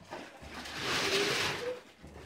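Wrapping paper rustling for about a second and a half, a soft papery hiss that swells and fades, with faint voices underneath.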